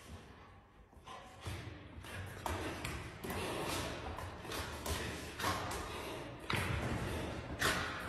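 A puppy and a tiger cub play-fighting on a hard floor: paws scrabbling and bodies thumping in quick irregular knocks, getting busier and louder after the first second and a half.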